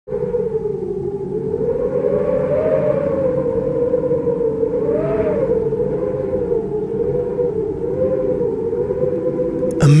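A long, wavering drone tone held near one pitch over a steady low rumble, with a brief rise and fall in pitch about halfway through.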